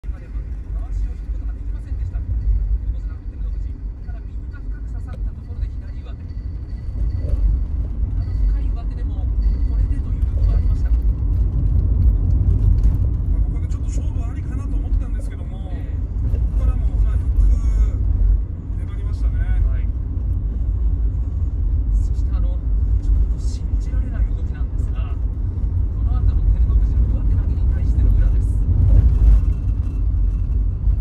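Steady low rumble inside a car's cabin, with a faint television broadcast, commentary included, playing through the car's audio system.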